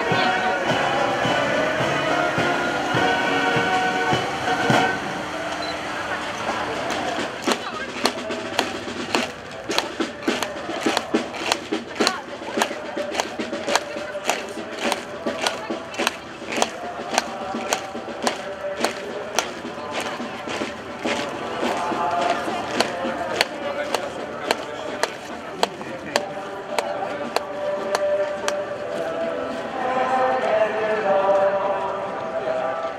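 Music or singing from a marching procession, and from about seven seconds in the sharp, even steps of boots marching on stone paving, about two a second.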